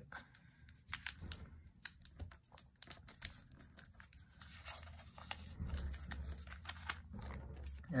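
Origami paper rustling and crinkling as two folded paper units are slid together and a flap is folded in, with scattered small crackles and taps.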